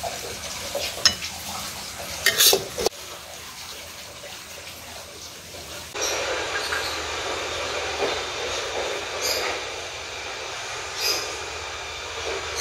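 A spatula scraping and clicking against a ceramic plate a few times as stir-fried leaves are scooped up. After that comes a steadier background noise with a few light clicks.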